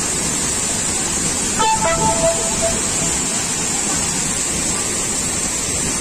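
Steady roar of a tall waterfall plunging into its pool, close by. A faint voice calls out briefly about two seconds in.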